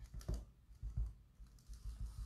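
Faint, irregular soft taps of a foam sponge dabbing paint through a stencil onto a glass pane, about four light dabs.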